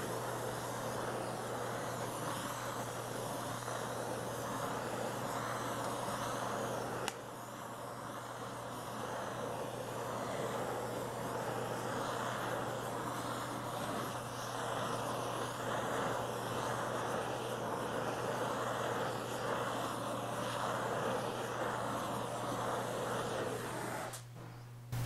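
Oxy-acetylene torch flame hissing steadily as it heats a steel body panel, over a low steady hum. A single click about seven seconds in, after which it is a little quieter.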